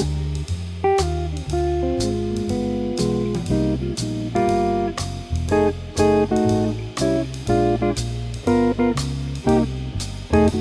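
Archtop electric guitar comping jazz-blues chords in B-flat, short and often syncopated chord stabs with chromatic passing chords, over a backing track of walking bass and drums keeping a steady swing pulse.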